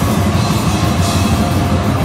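Death-grind band playing live, loud and dense: distorted electric guitar over a fast drum kit.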